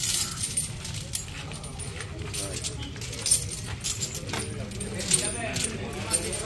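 Iron chains on a walking elephant's legs clinking and jangling, many irregular sharp metallic clinks as it steps.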